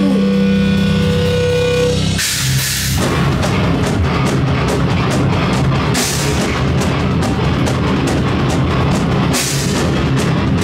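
Live hardcore band playing loud: distorted electric guitars hold a ringing chord, then about two seconds in the full band comes in with a heavy riff, pounding drums and crashing cymbals.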